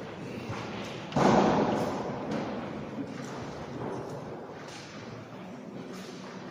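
A single heavy thump about a second in, ringing on in the echo of a large stone church nave, over a low background of room noise.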